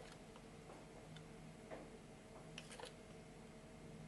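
A handful of faint, light ticks at irregular intervals as a small spatula works powder out of a reagent bottle over an electronic balance, over quiet room tone with a faint steady hum.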